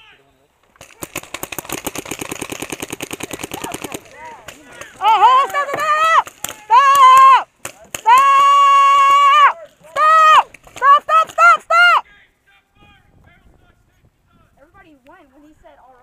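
A paintball marker firing a rapid burst of about a dozen shots a second for about three seconds, then a few scattered shots. After that come loud, drawn-out yells and a string of short shouts.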